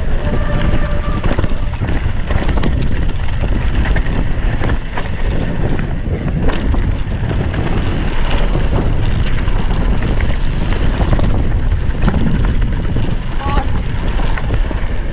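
Wind buffeting the camera microphone while a cross-country mountain bike descends fast on a dry dirt trail, with steady rolling noise and scattered knocks and rattles as the bike goes over bumps.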